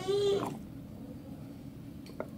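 A dog whines once, a short rising cry that ends about half a second in.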